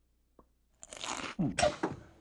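A person biting and chewing a piece of candy bar, starting about a second in, with a hummed 'hmm' near the end.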